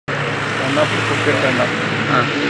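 Street noise: a steady engine-like hum and traffic noise, with indistinct voices in the background. It starts abruptly.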